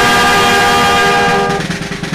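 Brass band holding one long sustained chord, the notes fading away near the end.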